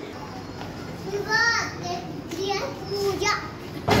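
Children's voices in the background: a child calls out a few short times with pauses between, and a sharp click comes near the end.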